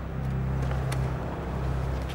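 A car engine running with a steady low hum.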